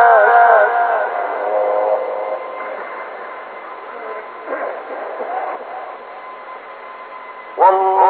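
Male reciter's mujawwad Quran recitation. A long, ornamented held note wavers and dies away about a second in. A quieter lull with faint voices follows, and the reciter's voice comes back strongly with a new phrase just before the end.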